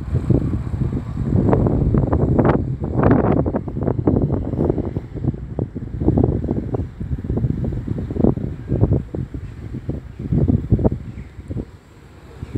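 Wind buffeting a smartphone's built-in microphone: loud, irregular rumbling gusts, strongest in the first few seconds and easing near the end.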